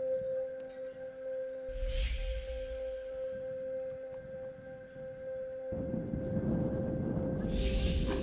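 Background music: a sustained, singing-bowl-like drone holding one steady tone, with whoosh effects swelling about two seconds in and again near the end. A rougher low rushing noise comes in suddenly about six seconds in.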